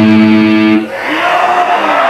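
Live black metal band's distorted electric guitars holding a loud sustained chord that cuts off a little under a second in, leaving a noisier wash of amplifier and room sound with faint lingering tones.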